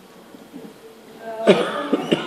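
A person coughing: a loud cough about one and a half seconds in, then a second, shorter one near the end.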